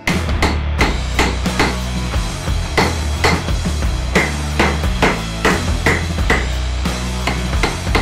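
Hammer blows on a masonry chisel scoring a line across a concrete paver: a steady run of sharp strikes, about two and a half a second, with background music underneath.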